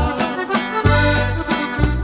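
Instrumental break in a norteño corrido: accordion melody over bass and a steady drum beat, with no singing.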